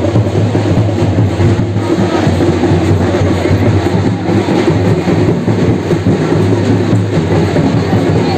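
Loud procession music with drumming, dense and unbroken, heavy in the low end.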